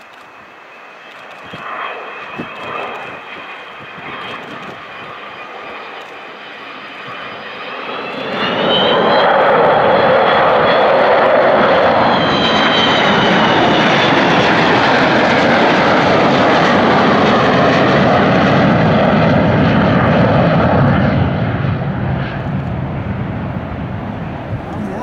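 Avro Vulcan XH558's four Olympus turbojets in a low, close flypast. The jet noise builds, turns loud about eight seconds in, and carries several high whining tones that rise and then drop in pitch as the bomber passes. It stays loud for a long stretch and eases off near the end.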